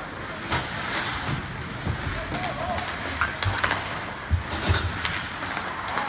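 Ice hockey play: skates scraping on the ice and several sharp clacks of sticks and puck, the loudest a little after the middle, over indistinct voices of players and spectators.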